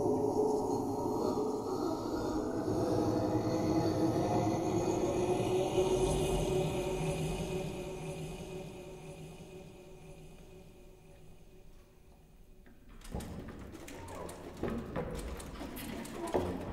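Contemporary chamber ensemble of winds, strings, harp and piano playing a sustained texture of held low tones with a slowly rising glide, which fades almost away. About three-quarters of the way in, scattered clicks and noisy attacks break in suddenly.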